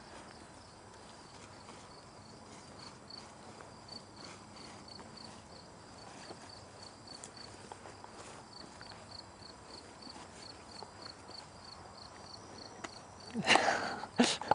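Faint outdoor ambience with an insect, likely a cricket, chirping high and steady about three times a second. A short loud sound breaks in near the end.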